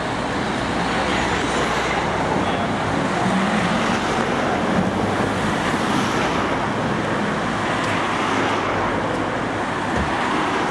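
Road traffic going by steadily, a continuous rush of tyres and engines that swells slightly in the middle.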